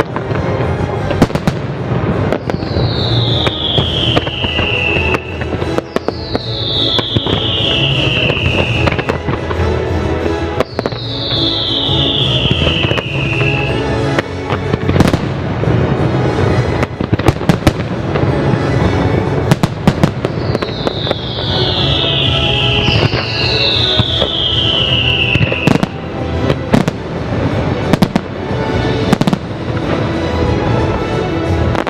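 Fireworks bursting in quick succession, with the show's music soundtrack playing underneath. Five long whistles, each falling in pitch, sound over the bursts, three in the first half and two near the end.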